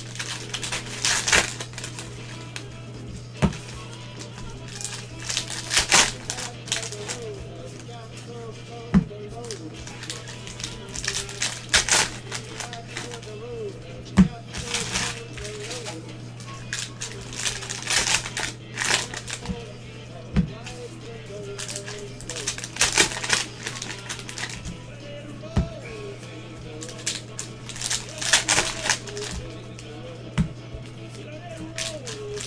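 Foil trading-card pack wrappers being torn open and crinkled in gloved hands, in repeated bursts, with sharp clicks as cards are handled and tapped. A steady low electrical hum runs underneath.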